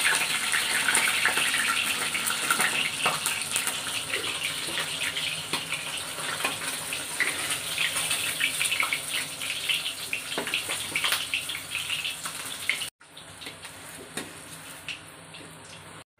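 Tengra fish sizzling and crackling in hot mustard oil in an iron kadhai as they finish frying, the sizzle slowly dying down. About 13 seconds in it cuts to a much fainter sizzle of the leftover oil.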